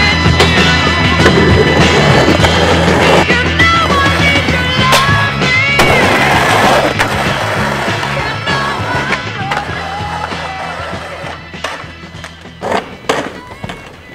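Rock soundtrack with guitar, fading out steadily. As it dies away, a few sharp clacks of a skateboard on asphalt near the end as the skater falls.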